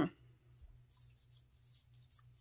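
Faint, soft rubbing and brushing of a hand over the skin of the wrist, in a few light strokes.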